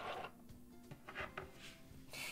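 Faint background music with a few light clicks of a small plastic toy picnic basket's lid being handled.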